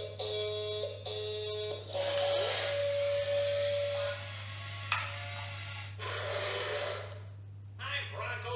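VTech Switch & Go Dinos Bronco triceratops toy playing its electronic sound effects while it transforms from car to dinosaur. Three short two-tone beeps come first, then a held tone over a whirring noise, and a sharp click about five seconds in.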